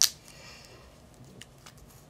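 A single sharp click right at the start, then a couple of faint ticks later on, from small objects being handled on a table.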